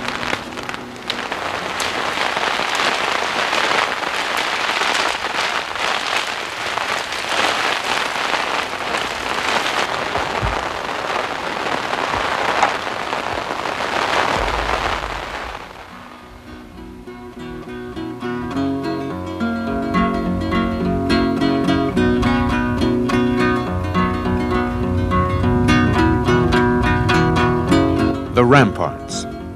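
A storm's wind and rain beating on small tents, a loud steady rush. About halfway through it gives way to strummed acoustic guitar music.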